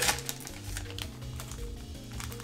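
Soft background music with sustained notes, with faint light clicking as a foil Yu-Gi-Oh booster pack is torn open and its cards are handled.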